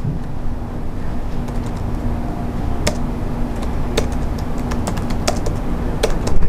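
Computer keyboard typing: irregular, scattered key clicks over a steady low hum.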